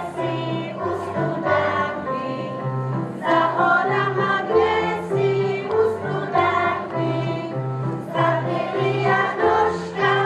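A group of young children singing a folk song in unison over a keyboard accompaniment with a steady, regular bass line.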